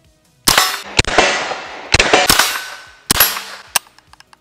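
Smith & Wesson M&P 15-22 semi-automatic .22 LR rifle firing about six shots at an uneven pace, each crack followed by a ringing tail. The firing stops after the last shot near the end, where the rifle jams with a live round pinched in the action.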